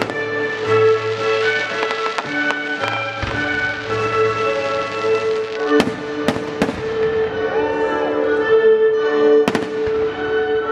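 A baroque orchestra holds sustained notes while aerial firework shells go off over it in sharp bangs. A few lighter reports come in the first seconds, three loud ones fall about six seconds in, and two more come close together near the end.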